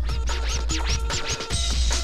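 Breakbeat DJ mix with a heavy bass line, overlaid with a quick run of about six scratch sweeps in the first second and a half.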